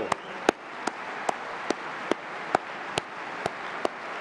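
Large crowd applauding, a steady wash of clapping, with one nearby pair of hands clapping sharply and evenly, about two or three claps a second.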